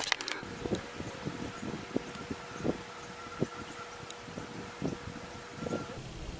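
Water being drawn up a clear tube into a solar thermal pump's tank by vacuum, gurgling faintly: scattered soft pops and ticks at irregular intervals over a faint steady hum.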